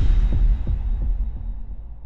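Deep electronic bass boom from a logo-intro sound effect, with a few throbbing pulses that fade away.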